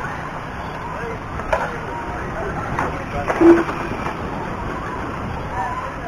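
Steady background of 2WD short-course RC trucks running on a dirt track, with faint voices and a brief knock about one and a half seconds in.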